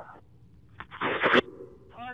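A short burst of police radio static, about half a second long, about a second in, with a click as the transmission keys up, between radio calls.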